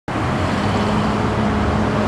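Steady vehicle noise: an even rumble with a faint low hum held throughout.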